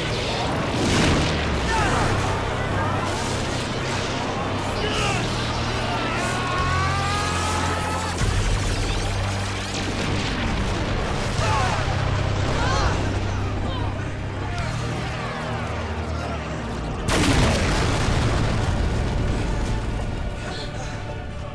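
Sound-effects mix over a dramatic score: sustained low bass notes that shift every few seconds, repeated energy-blast whooshes and booms, and wavering gliding cries. A sudden loud blast comes about seventeen seconds in.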